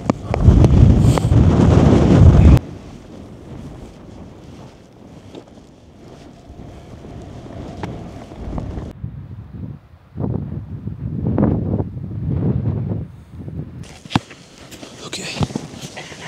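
Wind buffeting the microphone on an exposed mountain ridge: loud low rumbling for the first two and a half seconds that cuts off suddenly, then quieter wind, with a few more low gusts swelling later on.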